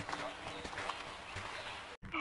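Faint, dense jumble of overlapping effects-processed cartoon soundtrack audio, voices and sound effects layered together, with scattered clicks.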